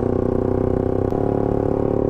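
Motorcycle engine running at a steady cruising speed, a constant hum with low wind rumble on the helmet-mounted microphone, shifting slightly about a second in.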